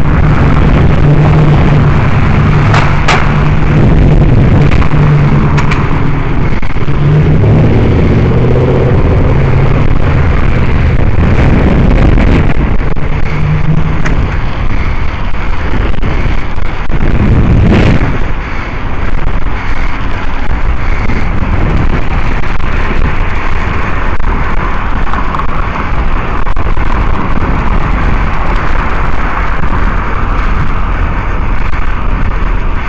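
Road traffic and wind rushing over the microphone of a moving bicycle. A steady engine drone runs through the first half, and a vehicle goes past a little after halfway.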